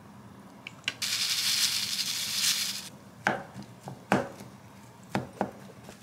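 Furikake shaken out of a plastic packet into a glass bowl of rice: a bright rustling hiss lasting about two seconds. Four short knocks follow in the second half.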